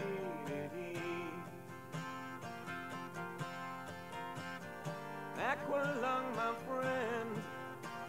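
Quiet acoustic guitar passage of a rock song, held chords with no drums, and a note sliding upward about five and a half seconds in.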